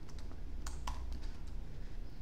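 Computer keyboard typing: about four quick keystrokes within the first second, then a pause.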